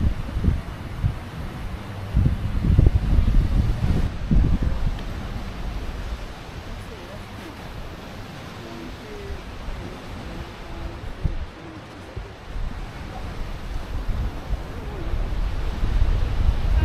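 Wind buffeting the microphone over the wash of Gulf surf. The low rumble is heaviest in the first few seconds and again near the end, with a quieter stretch between.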